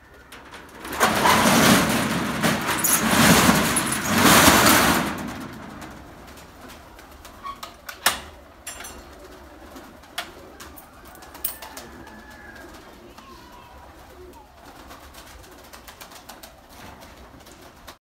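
A steel roller shutter rattles loudly for about four seconds as it is pushed up. After that, pigeons coo in the background, with a few sharp clicks and knocks as the loft's wire-mesh door is opened.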